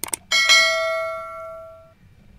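A couple of quick clicks, then a bell chime sound effect struck once that rings out and fades over about a second and a half.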